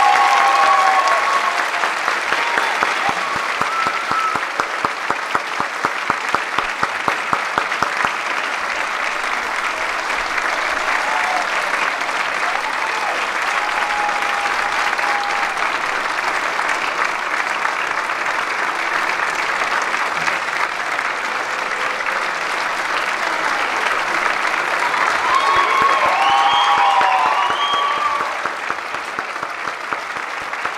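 A large theatre audience applauding, with shouted cheers and whoops near the start and again near the end. For a few seconds early on, some of the clapping falls into a steady beat of about three claps a second.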